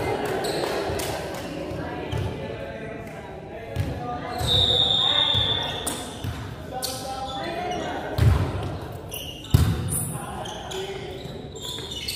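Volleyball being struck and bouncing on a wooden gym floor during a rally: sharp smacks echoing in a large hall, the loudest a little after eight seconds and at about nine and a half seconds. Players' voices chatter between the hits, and a short high squeak sounds about four seconds in.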